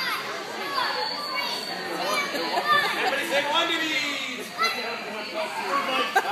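Children's and adults' voices talking and calling out over one another in a large hall.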